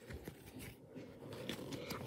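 Faint, scattered soft clicks and scrapes of trading cards being slid one past another in the hands while a stack is thumbed through.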